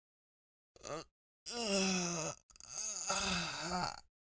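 A man's voice making wordless moaning sounds: a short one about a second in, then two drawn-out moans, the second wavering up and down in pitch.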